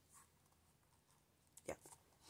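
Near silence: room tone, with a brief faint tap about three-quarters of the way through.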